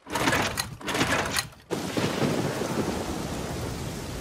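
Cartoon storm sound effect: a loud noisy burst for the first second and a half, then steady heavy rain from about two seconds in.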